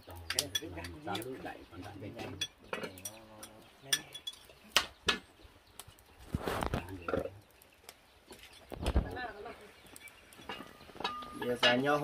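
Bowls and chopsticks clinking against a metal serving tray as dishes are set out, with voices in the background and a dull thump about nine seconds in.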